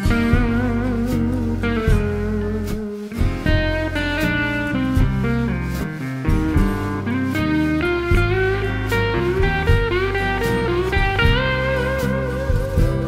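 Instrumental break in a blues song: a lead guitar plays wavering, sliding notes over bass and a steady drum beat.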